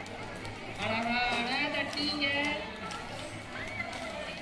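Women's voices singing with long held notes over crowd noise, with sharp clicks that fit rhythmic hand clapping.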